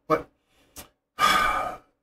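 A man says "but", pauses, then takes a loud, rushing breath lasting about half a second, just over a second in.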